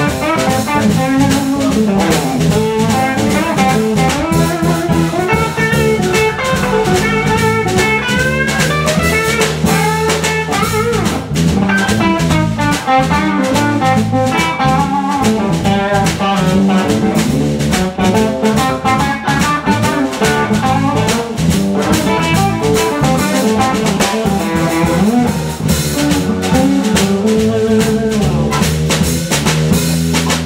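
Live blues band playing an instrumental passage: electric guitar, bass guitar, keyboard and drum kit keeping a steady beat.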